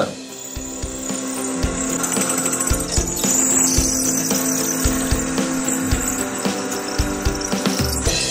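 Bench drill press running, its bit cutting a hole through a thick steel block, heard under background music.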